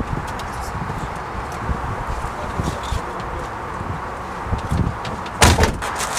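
Steady low rumble of a car's interior with a few soft knocks, then a loud, brief burst of noise near the end as something strikes or brushes against the car.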